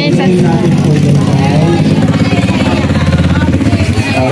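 A man's voice amplified over an outdoor loudspeaker, speaking into a microphone, with a heavy low hum under it.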